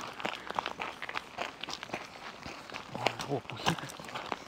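Footsteps of a person walking along a forest trail: a run of short, irregular steps. A faint voice is heard briefly about three seconds in.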